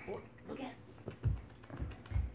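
Puppy lapping water from a plastic bowl, a quick run of small wet clicks about a second in.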